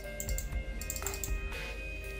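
Background music: held notes over a low, repeating pulse.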